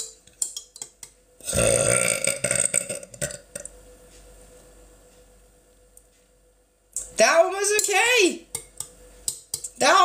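A person's deliberate, long, loud burp lasting about two seconds, starting about a second and a half in. Near the end, her voice is heard briefly.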